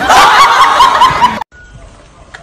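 A group of people laughing loudly, cutting off suddenly about one and a half seconds in, after which only a faint background remains.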